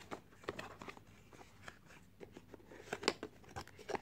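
Paperboard perfume box being opened by hand: faint scattered clicks and scrapes of the flap and inner insert, with a few sharper ticks about three seconds in.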